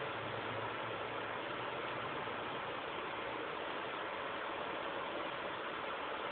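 Steady hiss of background noise, even throughout, with a faint low hum in the first second or so.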